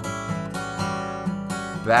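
Acoustic guitar strummed, chords ringing on with a fresh strum near the end.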